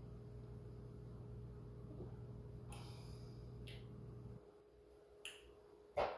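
Faint sips and swallows of beer from a glass, over a low steady background hum that stops about four and a half seconds in. A sharp click at the very end as the glass is set down on the countertop.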